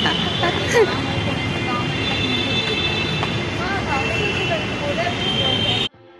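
Busy urban street noise of traffic and people, with a man laughing about a second in and a steady high tone running underneath. The sound cuts off abruptly just before the end.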